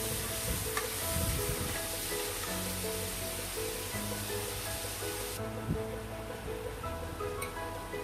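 Background music with held notes plays over onions and tomato sizzling in oil in a pressure cooker as they are stirred with a spatula. The high sizzle hiss cuts off suddenly about five seconds in, while the music carries on.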